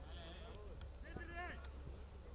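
Faint, distant shouts of footballers calling to each other across the pitch: short raised calls, the clearest about a second in, over a steady low rumble.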